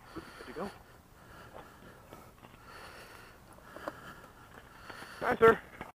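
Quiet background with faint, intermittent voices; a short spoken farewell near the end, after which the sound cuts off abruptly.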